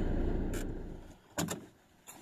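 Low, steady engine and road rumble inside a car's cabin while driving, fading out about a second in, followed by two quick sharp clicks.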